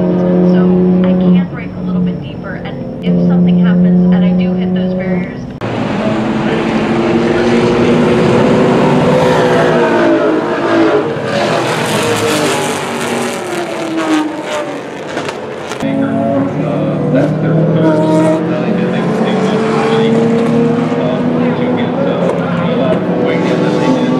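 Race car engines: first one car's engine holding a steady note, cut off briefly twice, then after an abrupt cut about five seconds in, several race cars passing at speed, their engine notes climbing and falling in pitch.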